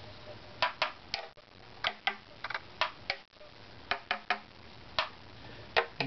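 A violin's ribs tapped by hand, about fourteen short, sharp taps at an uneven pace, some in quick pairs: tap-tone testing of the ribs' pitch, to match it to the top plate and find high spots to scrape.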